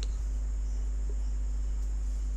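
Steady background noise with no speech: a low hum and a faint, unchanging high-pitched hiss.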